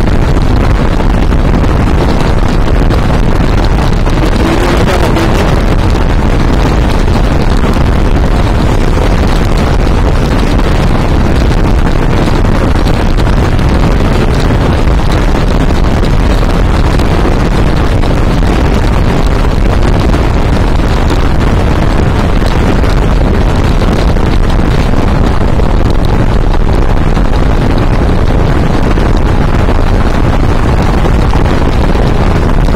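Steady, loud wind noise on the microphone of a camera riding on a moving motorcycle, mixed with the rush of the ride at road speed.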